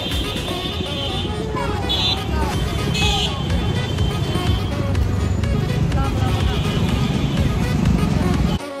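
Background music laid over busy street noise: motor vehicles passing and people talking.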